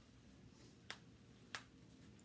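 Two short, sharp clicks, about two-thirds of a second apart, over near-silent room tone.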